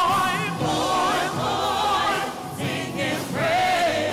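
A gospel praise team of several voices singing together through microphones, in long held notes with vibrato, with a short dip between phrases about two and a half seconds in.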